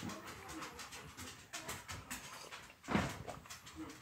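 Quiet room with faint rustling and clicks as a paperback book is held and shifted, and an audible breath drawn about three seconds in.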